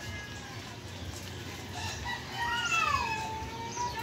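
A rooster crowing once, starting about two and a half seconds in: a long call that rises, then falls and holds a steady note until near the end.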